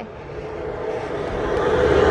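A steady droning noise with a held mid-pitched whine, growing gradually louder.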